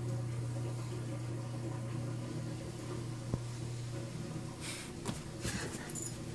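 A steady low hum, like a household appliance or fan, with a single click about three seconds in and a few brief rustles near the end.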